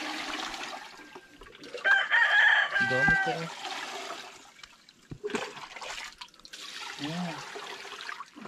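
A rooster crows once, about two seconds in, for a second and a half; it is the loudest sound. Water splashes and pours around it as a plastic jug scoops water in a shallow pond, with a couple of dull knocks.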